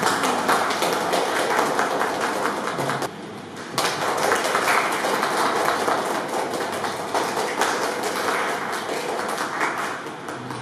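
Applause from a small group of people clapping hands continuously, dipping briefly about three seconds in.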